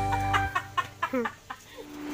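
Background music stops about half a second in. After it comes a quick run of short, falling clucks, typical of backyard chickens.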